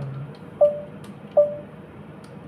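Two short pitched computer dings about a second apart, each cut off quickly: the Ubuntu terminal's alert bell, sounding as tab completion is tried on a half-typed ROS command.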